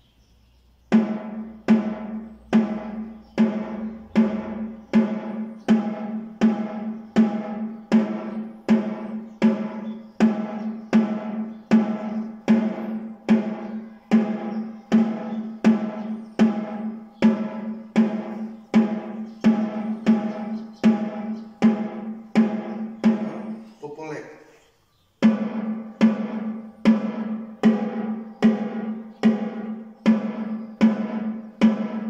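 Snare drum struck with wooden sticks in a slow, even practice exercise, about two strokes a second, each stroke ringing with a low drumhead tone. The playing stops briefly near the end, then starts again.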